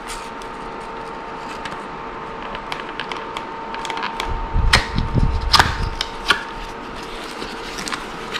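Hands unwrapping and opening a gift-wrapped cardboard box: scattered light taps and rustles of paper and cardboard, with a few louder knocks and thumps about halfway through as the box is opened. A faint steady hum runs underneath.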